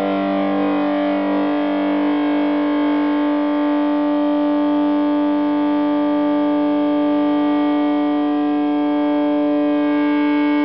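Electric guitar feeding back through a germanium PNP fuzz pedal and amp: one loud, steady sustained tone with many overtones, holding unchanged.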